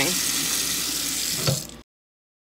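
Kitchen tap running into a stainless steel sink, a steady rush of water. A short knock near the end, then the sound cuts off abruptly into silence.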